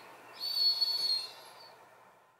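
A steady high-pitched whine over a light hiss, fading out near the end.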